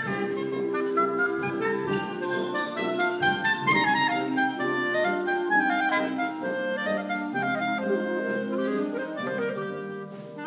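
Concert band playing, clarinets to the fore: a moving melody over held lower notes.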